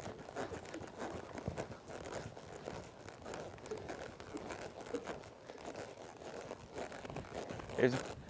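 Horse's hooves loping on soft arena dirt, a run of faint irregular thuds, with rustling and crinkling close to the microphone.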